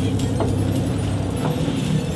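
Fishing boat's engine running with a steady low hum, and a couple of faint clicks over it.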